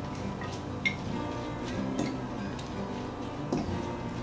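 Background music, with a few light clicks of a utensil against a glass mixing bowl as a cabbage and sour-cream slaw is stirred.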